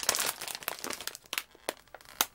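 Crinkly plastic snack bag being handled and turned in the hands: a dense burst of crackling at the start, then a few separate sharp crackles.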